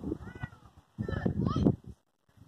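Young voices yelling out on the field: two short, high rising-and-falling calls about a second apart, over irregular wind rumble on the microphone.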